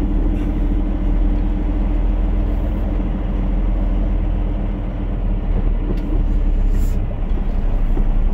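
Peterbilt 389 semi truck's diesel engine running at low speed as the truck creeps forward, a steady low drone heard from inside the cab, with a couple of light clicks in the second half.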